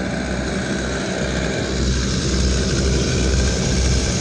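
Go-kart engines running, a steady mechanical drone with a low rumble that grows a little louder about two seconds in.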